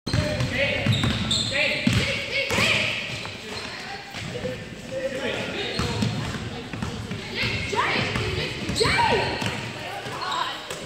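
Basketball being dribbled on a hardwood gym floor and sneakers squeaking as players run and cut, with voices calling around the hall.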